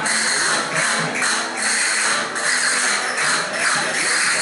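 Street folk music played on plucked string instruments, with a steady beat of short sharp clicks.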